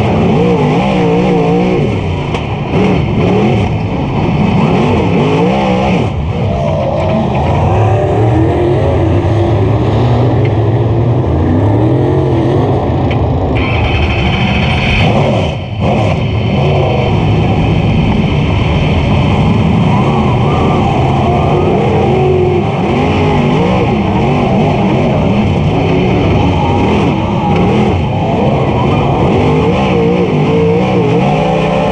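Super late model dirt race car's V8 engine, heard from inside the cockpit at racing speed, its pitch rising and falling as it revs up and backs off through the corners. There is a brief dip about halfway through.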